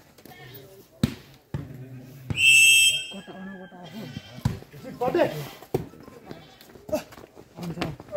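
A referee's whistle blows once, a loud steady shrill note of under a second about two seconds in, amid crowd chatter and shouts. Sharp slaps of a volleyball being hit sound a handful of times through the rally.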